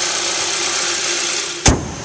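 2011 Kia Optima's 2.4-litre GDI four-cylinder engine idling steadily with the hood open. About 1.7 seconds in, the hood is slammed shut with a single sharp thud, and the engine is then muffled and quieter.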